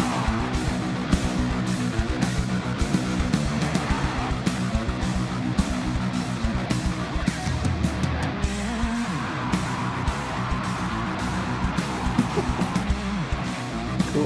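A live rock band playing a heavy electric guitar riff over bass and driving drums.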